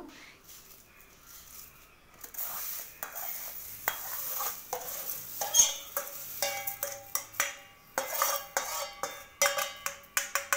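Steel spoon scraping and clinking against a small non-stick pan and a metal pot as salt is spooned in. It starts about two seconds in as a run of short scrapes and taps, with a few clinks that ring briefly.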